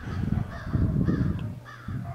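Low, rough rubbing of a wax applicator being worked over a car's painted body panel, close to the microphone.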